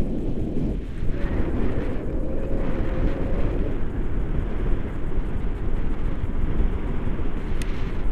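Airflow buffeting the camera's microphone in flight under a tandem paraglider: a steady, fluttering rush of wind noise, deepest and strongest in the low range.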